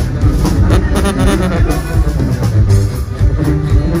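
A live band playing, with a drum kit keeping the beat under a strong bass line and guitar. A voice comes in right at the end.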